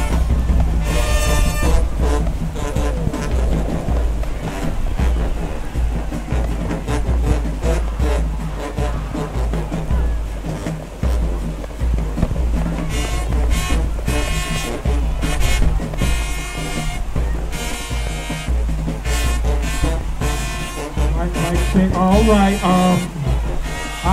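High school marching band playing: brass with sousaphones over a steady, heavy beat of bass drums.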